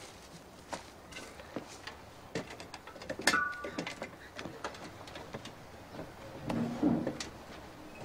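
Footsteps on the rungs of a ladder as someone climbs it: a run of light, irregular knocks and clicks, with one sharper clank a little past three seconds in.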